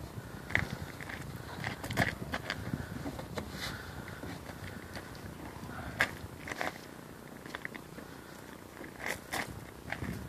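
Handling noise from a stretch fabric cover being pulled and tugged into place over a plastic portable toilet: rustling with scattered sharp clicks and snaps, mixed with footsteps on gravel.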